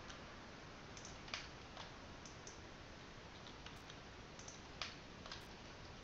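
Faint, irregular clicks of a computer mouse and keyboard, roughly two a second, over a steady low hiss.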